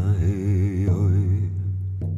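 Native American–style chant music: a long sung note with a wide, even vibrato over a steady low drone, the voice fading out near the end.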